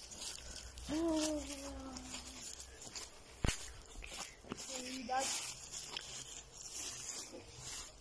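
Footsteps and rustling on forest-floor litter as a person walks, with a drawn-out hesitant voiced "yyy" about a second in, a short vocal sound about five seconds in, and a single sharp click midway.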